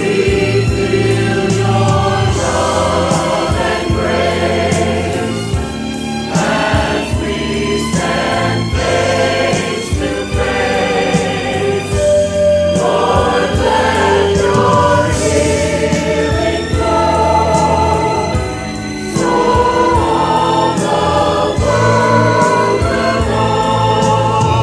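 Church choir singing a gospel song in parts over instrumental accompaniment with a steady beat.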